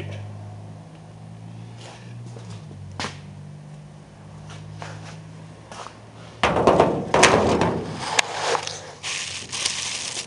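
A low steady hum with a few faint clicks, then, about six and a half seconds in, loud rustling and crinkling of wrapping being handled close to the microphone, with two sharp clicks in it.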